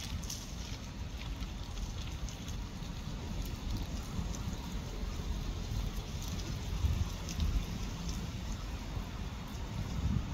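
Outdoor wind and light rain: wind rumbling unevenly on the phone's microphone over a soft hiss, with scattered faint ticks of raindrops.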